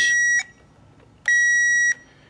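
Power Probe circuit tester giving a steady high beep as its tip touches a fuse terminal. The beep cuts off about half a second in, and a second beep of the same pitch sounds for most of a second in the second half. The tester is reading power on one side of the fuse and ground on the other, the sign of a blown fuse.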